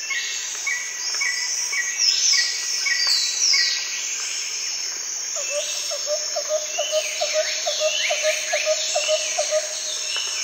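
Nature ambience of several birds calling over a steady high insect-like hiss: repeated short chirps and downward-sweeping whistles. From about halfway through, a regular run of lower chirps comes in, about three a second.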